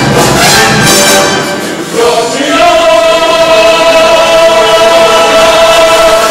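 Show choir singing with instrumental accompaniment in a brassy Broadway-style number. After a brief dip about two seconds in, the choir and accompaniment hold one long chord.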